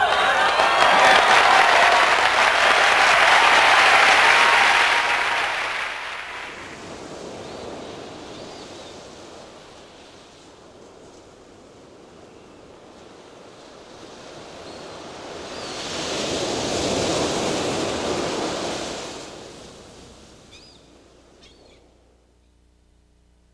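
Audience applause for about six seconds, fading away. Then ocean surf: waves washing in, with one slow swelling wave rising and falling near the end.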